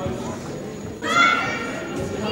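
A high-pitched shout from a young spectator about a second in, over the general chatter of voices echoing in a large sports hall.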